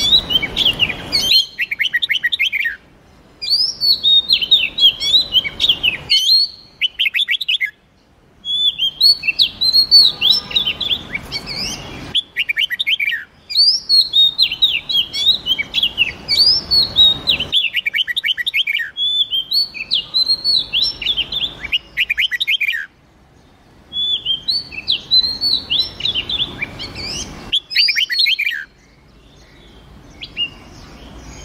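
Wild red-whiskered bulbul and oriental magpie-robin song: short phrases of quick whistled and chattering notes, repeated every few seconds with brief pauses. The recordings are spliced, so the background hiss cuts in and out between phrases.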